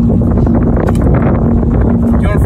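Strong wind buffeting the microphone: a loud, steady low rumble with a faint steady hum underneath.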